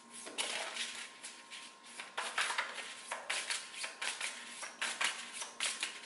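A deck of oracle cards being shuffled by hand: a run of short, irregular swishing strokes with brief pauses between them.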